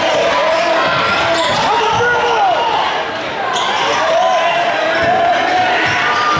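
Basketball play on a hardwood gym floor: short sneaker squeaks and a ball dribbling, over steady crowd noise and shouting voices that echo in the hall.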